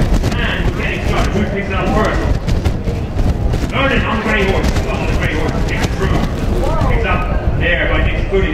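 People talking indistinctly over a steady low rumble, with the hoofbeats of polo ponies galloping on grass.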